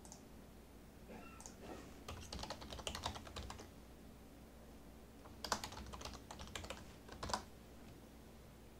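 Faint computer keyboard typing in two runs of quick keystrokes, the first about two seconds in and the second about five and a half seconds in.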